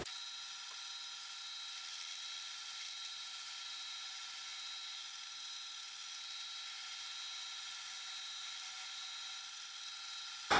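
Small benchtop metal lathe running: a faint, steady whir with a few steady high tones that do not change.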